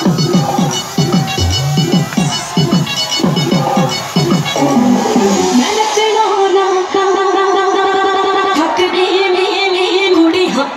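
Loud electronic dance music from a DJ's live sound system: a run of short falling bass notes, about two or three a second, gives way about six seconds in to a held steady synth note.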